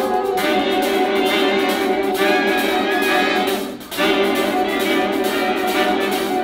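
Live big band playing, saxophones and brass over a steady beat, with a short break about four seconds in.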